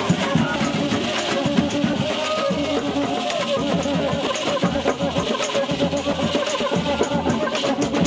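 Batucada street band playing a fast samba beat: bass drums, snare drums and tambourines drive a dense, steady rhythm under strummed banjo and acoustic guitar.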